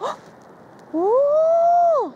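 A woman's drawn-out exclamation of delight, "oh!", starting about a second in: it rises in pitch, holds for about a second, then drops away.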